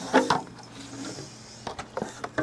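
Plastic handling noise: light scraping and a few sharp clicks and knocks, mostly near the end, as a 3D-printed plastic adapter is pushed through the handle of a clear plastic water jug.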